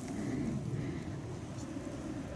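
Steady low rumble of background noise with no distinct sound standing out.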